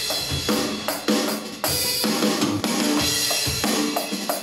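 Electronic drum kit played with sticks: a beat of drum and cymbal hits, about two strokes a second.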